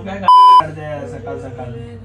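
A short, loud, steady high-pitched censor bleep, about a third of a second long, laid over speech a little after the start, with the speech cut out beneath it.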